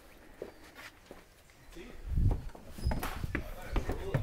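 Footsteps climbing wooden stair treads: a quiet first half, then several heavy steps about half a second apart starting about two seconds in.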